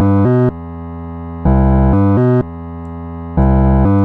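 Ableton Live's Simpler sampler playing a short looped MIDI phrase of low, pitched notes with many overtones. The phrase repeats about every two seconds, alternating louder and softer stretches.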